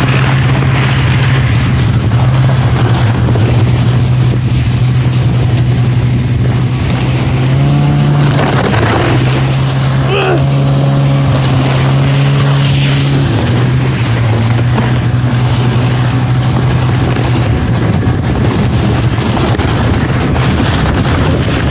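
Snowmobile engine running steadily while towing a toboggan through snow, over a constant rush of noise; the engine note shifts in pitch a few times around the middle.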